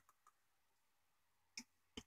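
Near silence, then two short computer mouse clicks near the end, a little under half a second apart.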